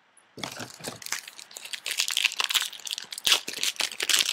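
Wrapper of a trading-card pack crinkling as it is torn open and handled: a dense, irregular crackle starting about a third of a second in.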